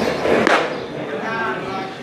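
Baseball bat hitting a pitched ball about half a second in, sending it up as a pop-up, with spectators' voices around it.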